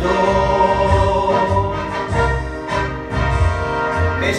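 Karaoke: a man singing into a microphone over a recorded backing track with a pulsing bass line. The vocal opens with one long held note.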